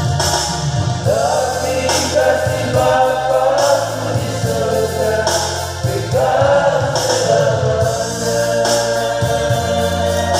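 Men's vocal group singing a gospel hymn in harmony over electronic keyboard accompaniment, with new sung phrases beginning about a second in and again about six seconds in.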